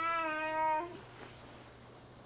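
Six-month-old baby vocalizing one long, steady-pitched 'aah' that stops about a second in.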